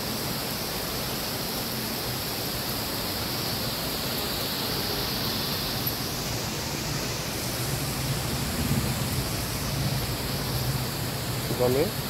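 Heavy downpour of rain, a steady even hiss without let-up.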